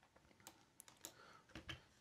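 Faint, scattered clicks of a computer keyboard: a handful of separate keystrokes against near silence.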